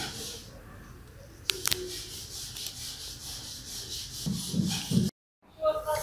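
Faint background noise with two short clicks about a second and a half in. Near the end it drops out to dead silence for a moment where the recording is spliced.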